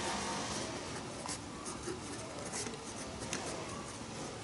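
Pen writing on workbook paper: the soft scratching of a series of short handwriting strokes.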